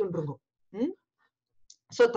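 Speech broken by pauses: a word trailing off, a short syllable about a second in, and faint clicks just before speech resumes. Between them the sound drops to dead silence, as with a video call's noise suppression.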